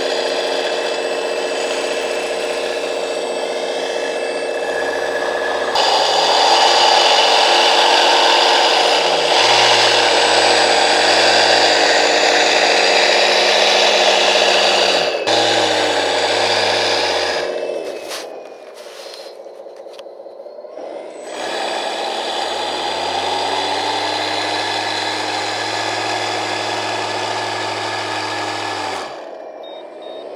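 Electric drive motors and hydraulic pump of a 1/14-scale radio-controlled vibratory road compactor whining as it drives through sand with its vibrating drum running, the pitch stepping up and down as the motors change speed. It grows louder about six seconds in, dips quieter for a few seconds about two-thirds through, then picks up again.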